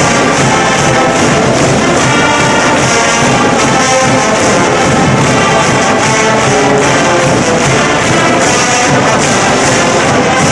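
Orchestral music with prominent brass, playing loudly and steadily.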